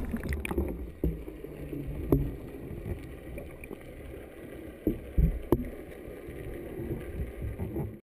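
Muffled underwater sound of a camera submerged in the sea: a splash fading in the first half second, then low churning water with scattered knocks and clicks, the loudest about two seconds and five seconds in.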